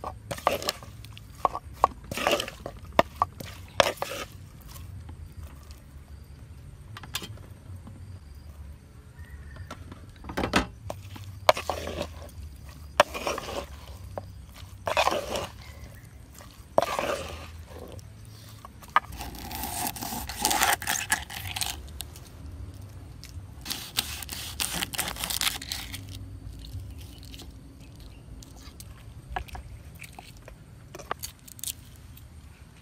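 Pestle knocking and scraping in a rough stone mortar as shredded vegetables are pounded and tossed for a salad: irregular knocks, with two longer scraping stretches past the middle.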